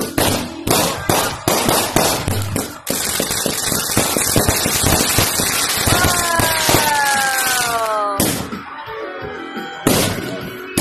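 Consumer fireworks going off: a rapid string of sharp bangs for the first few seconds, then a dense crackling that lasts several seconds. Falling whistles join about six seconds in, and single bangs come near the end.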